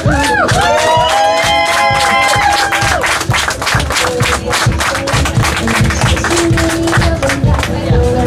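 Music with crowd cheering over it; from about three seconds in, dense clapping joins and goes on to the end.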